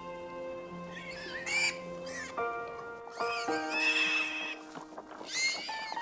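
Soft background music of held notes, with high-pitched farm animal squeals heard three times: about a second in, near the middle, and near the end.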